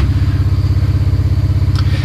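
An ATV engine idling steadily, with a low, even, fast pulse.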